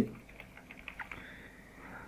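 Faint clicks of computer keyboard keys, a few scattered presses in the first half, then only a low hiss.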